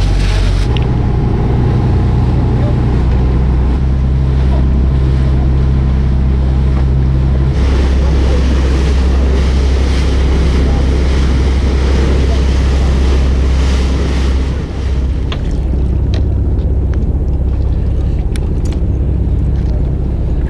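Fishing boat's engine running under way, with rushing wash and wind. The engine note shifts about a second in and again a few seconds later. The rush of water and wind is strongest in the middle and eases after about fifteen seconds.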